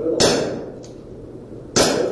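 Two shots from an airsoft revolver about a second and a half apart, each a sharp crack followed by a fading metallic ring as the BB strikes a steel target plate.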